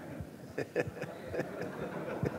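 A seated audience laughing quietly, a scattered ripple of chuckles.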